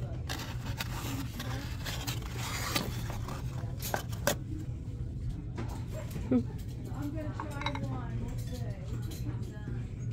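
Store ambience under a steady low hum, with scattered light clicks and knocks of ceramics and a cardboard box being handled on a shelf. Indistinct voices sound in the background, mostly in the second half.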